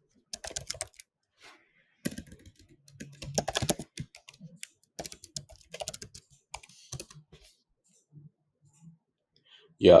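Computer keyboard typing in three short bursts of keystrokes with pauses between, then a few lone taps near the end.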